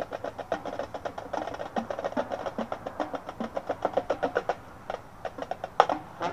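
Marching band percussion playing a quick run of short, separate strikes, several a second, that thins out about three-quarters of the way through, with one louder hit just before the end.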